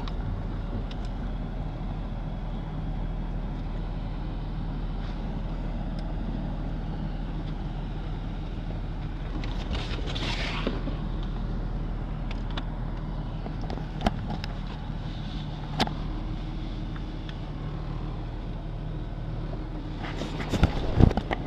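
Off-road 4x4's engine running steadily at low trail speed, heard from inside the cabin. A brief rushing noise comes about halfway through, and a couple of sharp knocks come in the second half as the vehicle works over the rocky trail.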